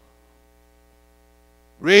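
Faint steady electrical hum, typical of mains hum in a sound system, during a pause in speech; a man's voice over the microphone comes in near the end.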